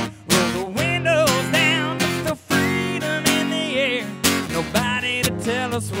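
Acoustic guitar strummed in a steady rhythm, with a man singing held notes that waver.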